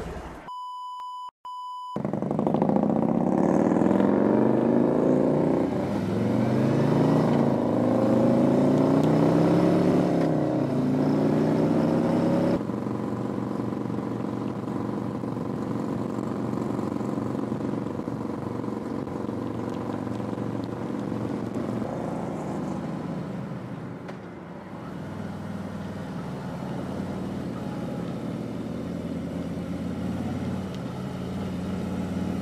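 A short steady beep, then a Harley-Davidson Electra Glide's V-twin accelerating through the gears, its pitch climbing and falling back with each shift. From about twelve seconds in, the engine runs steadily at cruising speed.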